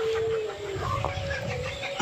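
Outdoor ambience with a low rumble and a distant bird call, one held, slightly falling note lasting about the first half-second.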